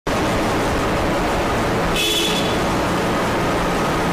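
Steady background hiss, with a brief high tone about two seconds in.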